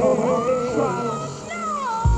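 Male gospel lead vocal, slowed and pitched down in a chopped-and-screwed remix: long held notes with a wavering vibrato that climb early on and slide down near the end, over thin backing music.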